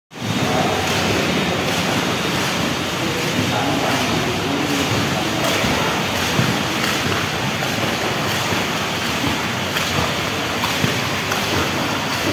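Swimming pool ambience: a steady wash of rushing water noise with indistinct voices mixed in.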